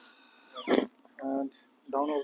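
A man's voice making brief murmured, untranscribed sounds, twice, preceded by a short noisy burst. A faint steady high whine cuts off suddenly under a second in.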